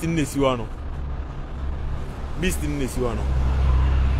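Low, steady rumble of city street traffic, swelling louder near the end as a vehicle passes.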